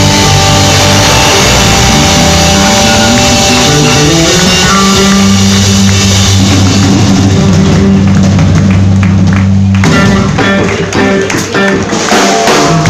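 Live rock band playing an instrumental passage: electric guitars with held chords and low notes over a drum kit, loud and dense. About ten seconds in the held notes cut off and the drums carry on with sparser guitar.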